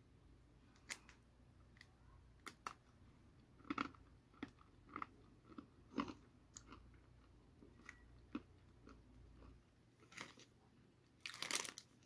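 Faint crunching and chewing of a hard curry-and-ginger aperitif biscuit, with short crunches scattered throughout and a louder crackly burst near the end.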